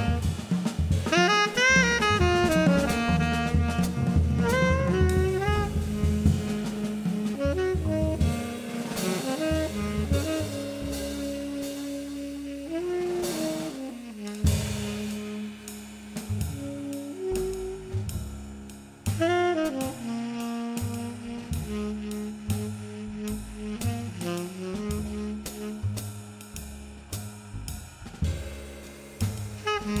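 Live jazz trio playing: a tenor saxophone carries the melody with bending, sliding notes over plucked upright bass and a drum kit with cymbals. The playing drops softer for a few seconds about midway, then picks up again.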